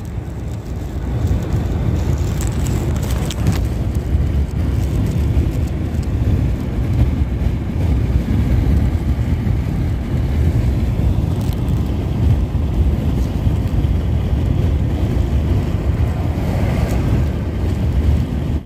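Steady low rumble of road and engine noise heard inside the cabin of a car moving at highway speed.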